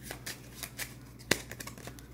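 A deck of playing cards being shuffled by hand: a run of soft, quick card clicks, with one sharper click just over a second in.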